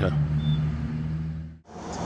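A steady low mechanical hum, which cuts out suddenly about one and a half seconds in. A louder, even noise follows, like the inside of a moving coach.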